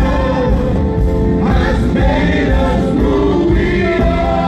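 Live gospel worship music: a group of singers with held, sliding notes over keyboard accompaniment.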